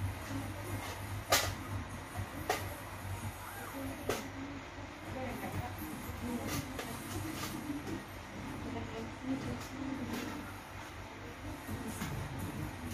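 Indistinct low voices over a steady low hum, with a few sharp clicks scattered through.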